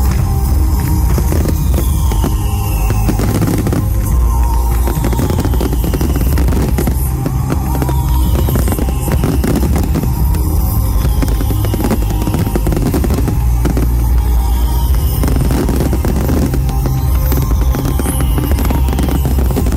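Loud music played over a fireworks display: a steady deep bass with a falling tone repeating about every two seconds, mixed with the dense bangs and crackle of fireworks shells bursting.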